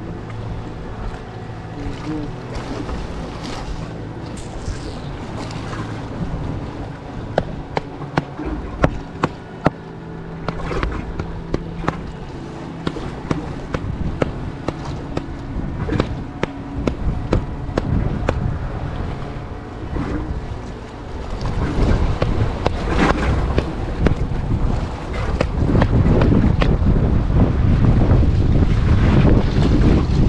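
Wind buffeting the microphone on an open seashore, a low rumble that grows much stronger about two-thirds of the way through, over the wash of the sea. A few sharp clicks sound near the middle.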